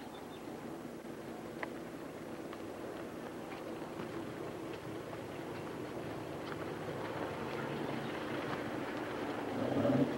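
A truck's engine running as it approaches along the road, growing steadily louder.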